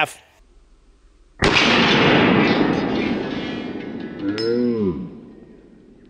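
A single .45 ACP pistol shot played back slowed down: a sudden blast about a second and a half in that fades away over about three and a half seconds, with a short tone that rises and falls near the end.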